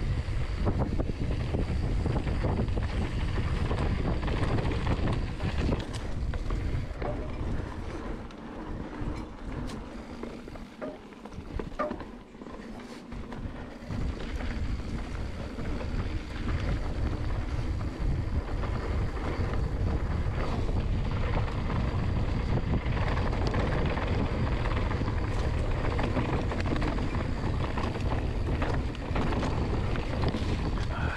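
Wind buffeting the microphone of a mountain bike's rider-mounted camera, with tyre noise on a dirt trail during a fast descent; the noise drops for a few seconds near the middle, then comes back up.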